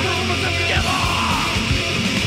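Thrash metal recording playing loud and dense: distorted electric guitars over fast, busy drums, with a yelled vocal over the top.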